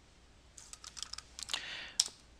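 Typing on a computer keyboard: a quick run of keystrokes about halfway through, a brief soft hiss, then one louder key click at the end.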